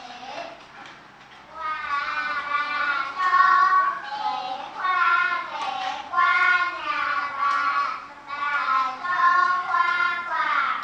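A group of young children's voices reading a text aloud together in a sing-song chant, phrase by phrase with short pauses between.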